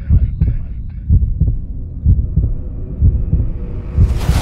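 Heartbeat sound effect: low double thumps, lub-dub, about once a second, with a fading tail of higher sound in the first second.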